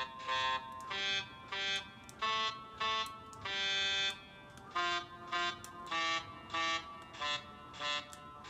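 Virtual saxophone app on a phone playing a melody of about sixteen short, separate synthesized reed-like notes at changing pitches, with one note held longer midway. The pitch of each note is set by which combination of the clip-on widget buttons, serving as saxophone keys, is pressed.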